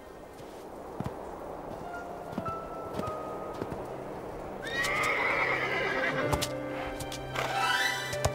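A cartoon horse whinnies loudly about five seconds in, with a second rising neigh near the end, over soft background music.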